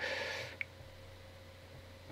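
A short breath at the start, then one faint tick. After that a quiet pause with only a faint steady electrical hum.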